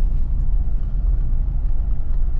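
Steady low rumble of a moving vehicle heard from inside the cabin: engine and road noise while driving.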